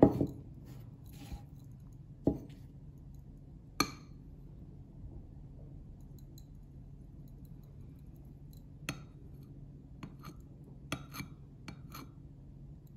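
Porcelain saucer and coffee cup touching with a handful of separate light clinks, spread out over several seconds, as the saucer is tilted over the cup to drain the coffee grounds. A low steady hum lies underneath.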